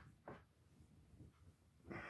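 Near silence: room tone, with one short faint sound about a third of a second in.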